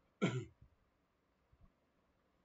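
A man clears his throat once, a short sharp burst near the start.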